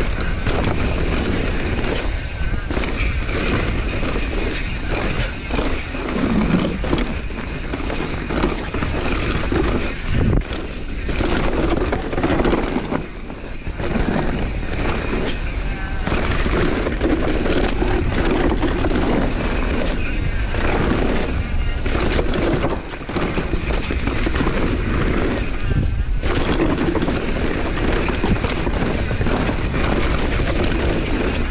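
Propain Spindrift mullet mountain bike ridden fast down a dirt forest trail. Tyres roll over dirt and roots, the chain and suspension clatter, and short knocks come from impacts, all under steady wind noise on the camera microphone.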